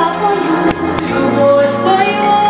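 Music: a woman singing a song over instrumental accompaniment, amplified on stage, with two sharp percussive hits near the middle.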